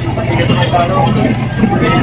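Street traffic: a motor vehicle engine runs with a steady low hum nearby, with voices talking in the background.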